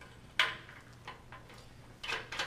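One sharp click about half a second in, followed by two faint ticks: a motion sensor's mounting nut and wires being handled against a sheet-metal high bay fixture as the nut is slid over the sensor's leads.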